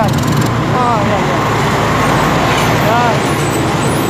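Steady engine and road noise heard from inside a moving vehicle, with brief snatches of a voice in the background.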